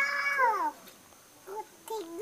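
A single high meow-like call, about two thirds of a second long, dropping in pitch at the end.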